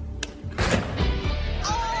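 Game-show music sting for stopping the number spin: a short click, then a sudden loud hit about half a second in that carries on as a dense, sustained burst of sound.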